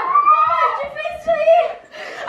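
Young people's voices calling out loudly and excitedly over each other, with no clear words, dropping off briefly near the end.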